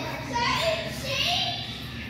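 Indistinct voices talking in the background, children's voices among them.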